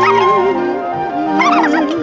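Orchestral film-score music with a held, wavering melody line, with a few short high chirping calls over it about one and a half seconds in.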